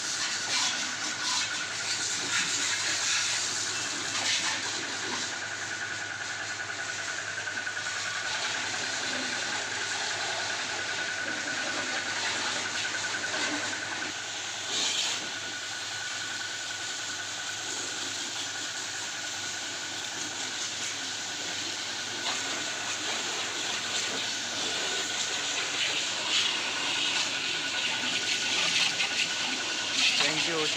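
High-pressure water jet spraying a scooter: a steady hiss of spray with water splashing off the bodywork and a faint steady high tone underneath.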